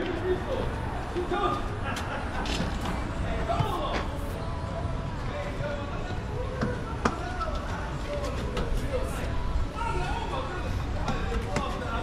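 Indistinct voices of people talking, over a steady low rumble, with a few sharp knocks and clicks.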